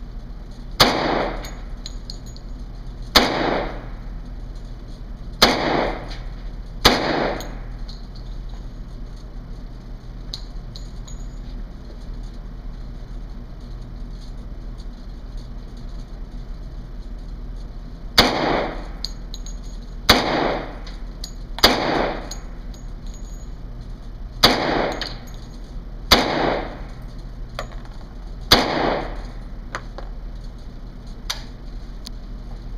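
Ten single shots from a .45-caliber handgun in an indoor range, each with a short echo: four in the first seven seconds, a pause of about ten seconds, then six more a second or two apart.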